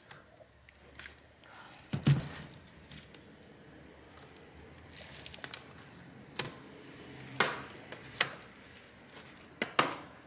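Plastic clips of a Gigabyte G5 laptop's bottom cover snapping loose one after another as a pry pick works along the seam: about six sharp clicks with some scraping between them, the loudest about two seconds in.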